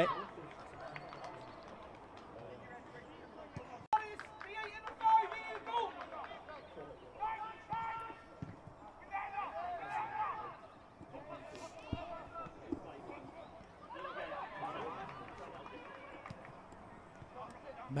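Faint shouts and calls from players and spectators across an outdoor football pitch, heard in short scattered bursts over a low steady background hum, with a single sharp click about four seconds in.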